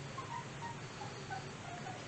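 Quiet room tone with a steady low hum, crossed by a scattered run of faint, short high tones.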